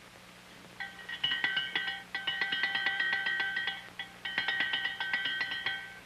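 An electric bell ringing rapidly in two long rings with a short break between them, starting about a second in, over a faint low hum.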